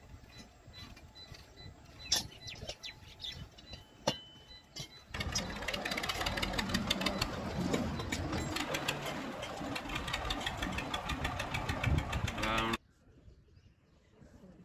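A few sharp metallic clinks, then from about five seconds in a farm tractor's engine running loudly and steadily. The engine sound cuts off abruptly near the end.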